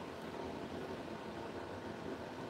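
Steady low background noise with a faint hum, as of room tone or a running fan, with no distinct events.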